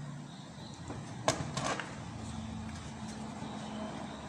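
Handling noise while working inside an open desktop computer case: one sharp click about a second in, then two or three softer clicks, over a faint steady hum.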